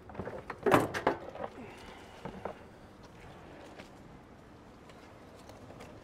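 A short cluster of sharp knocks and clatters about a second in, then a couple of lighter knocks a second or so later, with only faint background after.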